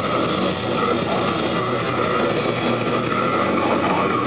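Hardcore metal band playing live: a dense, unbroken wall of distorted guitars and drums.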